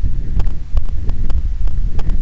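Wind buffeting and road rumble on a bicycle-mounted camera's microphone while riding, a heavy fluttering low rumble, with irregular sharp clicks and knocks through it.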